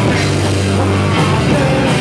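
Rock band playing live and loud: electric guitars and drums, with a low note held for about a second before the chord changes.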